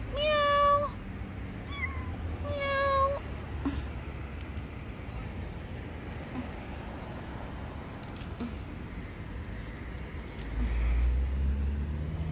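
A stranded kitten crying: three high meows in the first three seconds, the first and last long and steady, the middle one short. After that only a low background rumble, which swells near the end.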